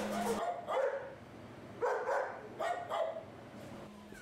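Puppies yipping and barking: several short calls in the first three seconds.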